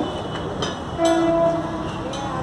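A horn sounds once, a steady half-second note starting about a second in, over a constant background of traffic and kitchen noise.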